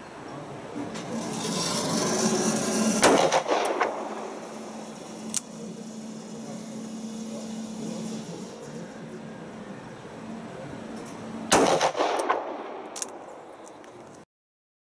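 Manurhin MR73 revolver firing 9mm Parabellum from its accessory 9mm cylinder: two shots about eight and a half seconds apart, each ringing on briefly after the crack.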